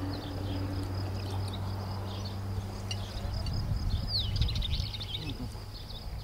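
Outdoor countryside ambience: a steady high-pitched insect chirring, with a few quick descending bird chirps, most of them about four seconds in, over a low steady hum.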